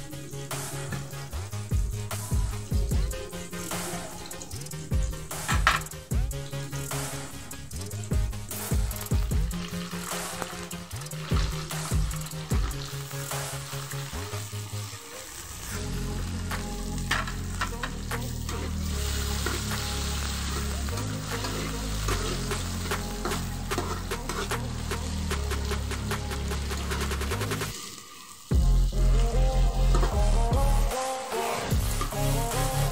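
Garlic, shallots and green chilies sizzling in hot oil in a pan, under background music with a bass line. The music changes about halfway through, drops out briefly near the end and comes back louder.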